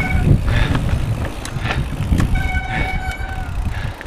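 Mountain bike riding down a dirt singletrack: a steady low rumble of tyres and wind on the camera, with sharp knocks and rattles from bumps in the trail. A short high squeal sounds twice, at the start and again midway.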